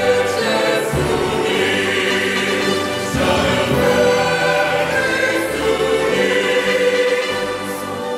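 Choir singing in long held notes over instrumental music, easing off near the end.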